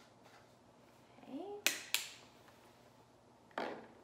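Kitchenware being handled while vanilla is measured into a bowl: two sharp clicks of a metal measuring spoon and a small glass bottle, about a quarter second apart, right after a brief rising "mm" from a woman. Near the end a softer knock as the small bottle is set down on the wooden table.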